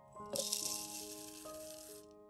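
Dry rolled oats poured from a measuring cup into an empty plastic blender cup: a rattling rush of flakes that starts about a third of a second in, is loudest just after, and runs on for about a second and a half.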